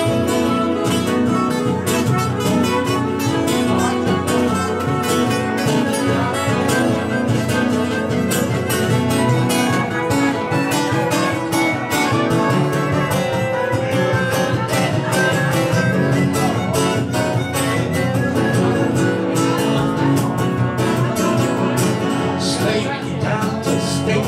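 Instrumental break in a live acoustic song: several acoustic guitars strummed steadily in a fast, even rhythm, with a trumpet playing along.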